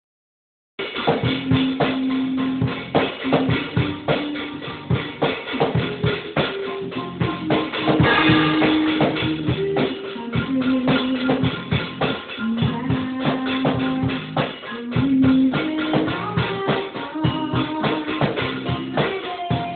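A Pearl drum kit played, with bass drum, snare and cymbal strokes, starting about a second in. A tune of held notes plays alongside the drumming.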